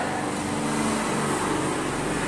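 A steady low mechanical hum with no strokes or knocks in it.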